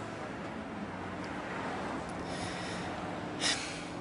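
Steady outdoor street background noise, with a short, sharp hiss about three and a half seconds in.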